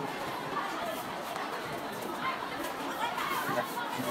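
Background chatter of many children's voices talking at once, steady and indistinct, with no single voice standing out.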